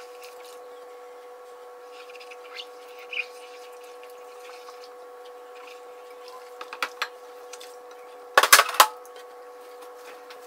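Dishes being washed by hand in a plastic washing-up bowl of soapy water: soft rubbing and a few small clinks, then a short cluster of louder clatters of crockery near the end, over a steady hum.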